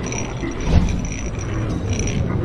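Logo-intro sound effects: a steady low rumble with a high whistle over it and a thud about three quarters of a second in.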